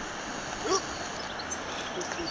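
Steady rush of a river flowing through a rocky gorge below, heard from above as an even wash of noise, with a faint distant voice briefly under a second in.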